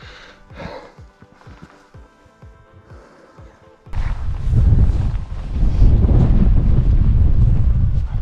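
Soft background music, then about four seconds in a sudden loud low rumble of wind buffeting the microphone.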